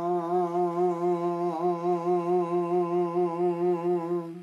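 An older man's unaccompanied singing voice holding one long note of Punjabi Sufi verse, with a steady wavering vibrato of about four to five pulses a second.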